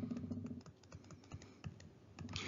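Stylus pen tapping and clicking faintly on a writing tablet as a formula is handwritten, with scattered light clicks. A faint low hum stops about half a second in.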